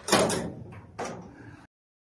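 A door being moved, heard as two bursts of noise: a louder one just after the start and a weaker one about a second in. The sound cuts off abruptly shortly before the end.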